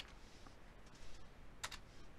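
A few faint computer keyboard keystrokes, sharp and isolated: one at the start, a weak one about half a second in, and a stronger double tap about a second and a half in, as a name is typed in and entered.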